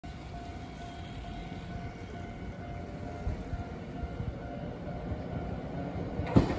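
Low rumble of an approaching Nankai 6200 series electric train, growing slowly louder, with a faint ringing tone repeating about twice a second over it.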